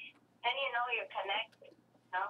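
A voice speaking through a telephone, sounding thin and narrow, over a steady low hum.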